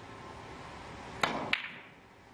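Carom billiard shot: two sharp clicks about a third of a second apart, the cue tip striking the cue ball and then the cue ball striking another ball.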